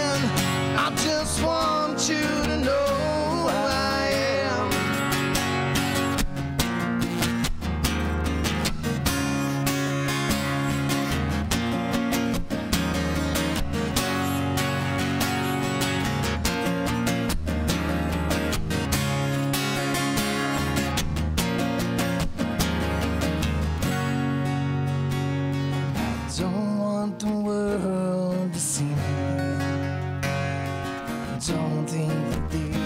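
Two acoustic guitars strummed together in a steady rhythm, with a man singing over them in the first few seconds and again near the end.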